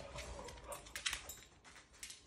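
A dog sniffing hard along a dresser while searching for a hidden scent, with short sharp sniffs and light clicks of its movements on a hard floor, and a faint whimper in about the first second.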